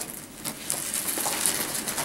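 Rustling and scuffing of a 1000D Cordura nylon bag being handled, as a fabric top is worked into it.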